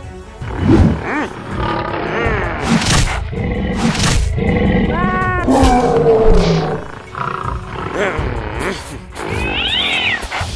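Cartoon lion roaring and growling sound effects over background music, with two sharp hits about three and four seconds in.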